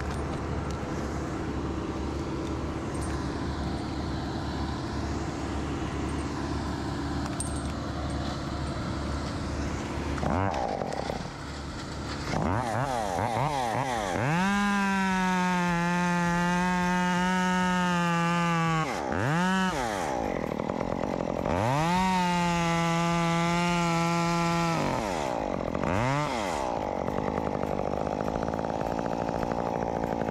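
Chainsaw idling for about ten seconds, then revved to full throttle for two cuts of about three to four seconds each into red oak wood. Between the cuts it drops back toward idle, with a short blip of the throttle after each cut, and it revs up again at the end.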